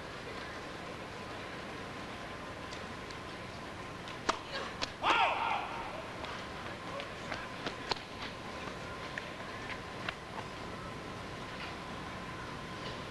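Indoor tennis arena between points: a low steady crowd murmur with a faint steady tone, scattered sharp ticks of tennis balls bouncing on the court, and a brief shouted call from a spectator about five seconds in.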